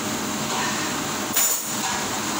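Steady, loud rushing noise like running machinery, with a short sharp clatter about one and a half seconds in.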